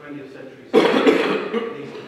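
A man coughing close to a table microphone: a sudden loud cough starts about three-quarters of a second in and lasts about a second.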